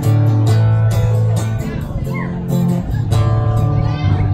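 Acoustic guitar strummed in an instrumental break of a song, with no singing, full low chords ringing under repeated strokes.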